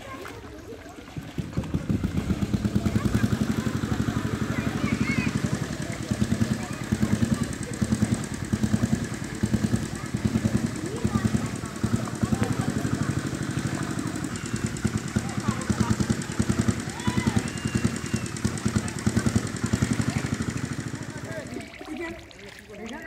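A small engine starts up about a second in and then runs steadily, beating fast and evenly. People's voices chatter faintly behind it.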